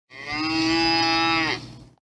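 A cow mooing: one long call of about a second and a half that dips in pitch as it fades out.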